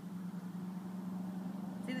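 A steady low hum over a faint hiss, with no distinct knocks or clicks.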